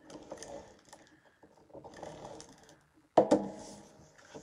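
Cardstock and patterned paper being handled and shifted on a craft mat: soft rustling and small scattered clicks, then one sharp knock about three seconds in as a piece is set down.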